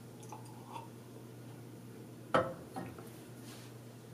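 Faint mouth sounds of a man sipping and tasting whisked matcha, with one short, sharp knock a little over two seconds in.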